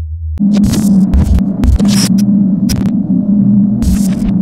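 A deep bass note held over from the song, cut off less than half a second in by a loud, steady electronic buzz with irregular crackles and clicks: a glitch-style sound effect for the video's outro graphics.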